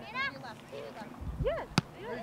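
A single sharp thump of a soccer ball being kicked near the end, between brief high-pitched shouts from players or spectators.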